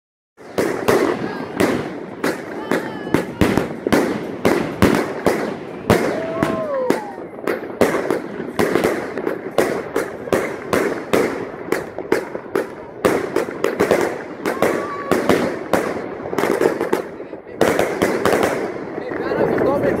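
Many aerial fireworks going off at once: a dense, nonstop run of sharp bangs, several a second, over continuous crackling from rockets and bursting shells overhead.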